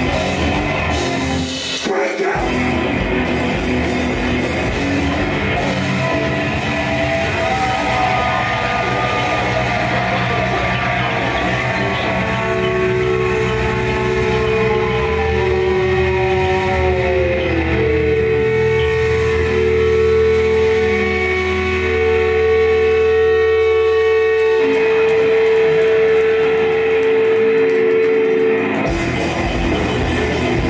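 Live punk band playing loud: distorted electric guitars, bass and drums. About halfway through the guitar pitches slide downward, then long notes are held until near the end.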